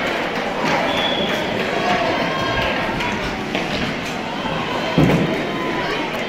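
Ice hockey game in an indoor rink: spectators' voices over the noise of play on the ice, with one loud thud about five seconds in.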